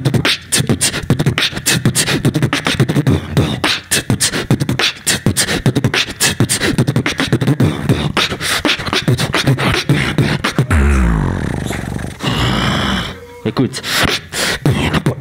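A beatboxer performing solo into a microphone: a fast, dense run of percussive mouth sounds. About ten and a half seconds in he switches to a held deep bass note that slides down in pitch, then a sustained wavering pitched sound, before the percussion picks up again just before the end.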